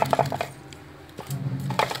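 Metal spoon clinking and scraping against a steel bowl and plate while scooping fried chicken, with a cluster of sharp clinks at the start and another near the end.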